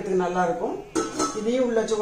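Stainless-steel vessel set down inside a pressure cooker, metal clinking on metal about a second in and again near the end, under a woman's talking.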